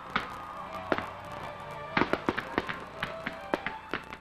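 Fireworks going off: irregular sharp bangs and crackles, with a dense cluster about halfway through, over faint music.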